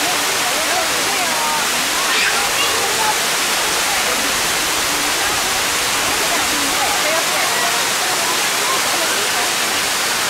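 Steady rush of a waterfall pouring onto rocks into a shallow stream, with faint voices of people talking in the background.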